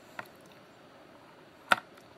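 Magnet test rig handled by hand: a faint tick just after the start, then one sharp click near the end as the magnets on the wooden arm are moved against the magnet stacks.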